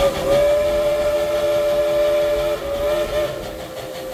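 Whistle of a 1938 Baldwin steam locomotive blowing one long chord. About two and a half seconds in, the lower notes drop away and a single note carries on.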